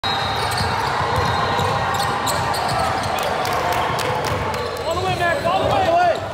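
Youth basketball game on a hardwood gym court: the ball bouncing and players' shoes striking the floor, with voices calling out. Several high squeaks or calls come near the end.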